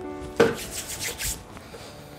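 Hands brushing and rubbing: one sharp swish followed by a few quick rubbing strokes that fade within about a second, over soft background music with held tones.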